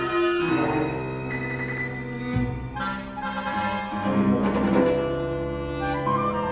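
Ten-instrument chamber ensemble playing contemporary concert music: layered, long-held notes, with a deep low note coming in about halfway through and held to the end.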